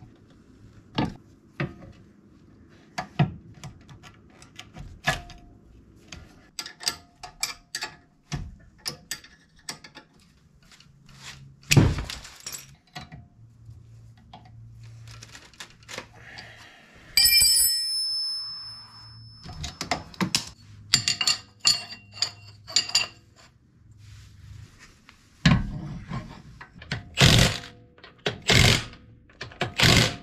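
Metal hand tools clicking, knocking and scraping against a car's rear brake caliper and bracket, with a struck metal part ringing briefly about seventeen seconds in. Near the end a cordless impact wrench runs in a few short bursts on the wheel's lug nuts.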